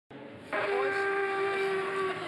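A long twisted animal horn blown like a trumpet: one steady, held note that starts about half a second in.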